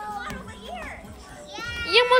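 Young children's voices calling out at play, without clear words: a drawn-out high call at the start, short sliding calls in the middle, and a louder rising call near the end.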